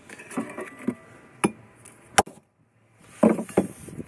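Bricklaying tool work: a few sharp knocks and clinks of a steel tool on brick. The two loudest come about a second and a half and two seconds in, as a brick half is set into the course.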